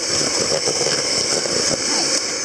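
Electric hand whisk running steadily, its twin beaters whipping margarine and caster sugar in a plastic mixing bowl: the creaming stage, beating air into the mixture for a light sponge.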